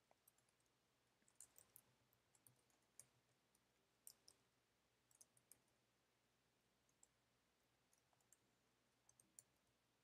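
Near silence broken by faint computer keyboard key presses: scattered single taps and small quick clusters, irregularly spaced.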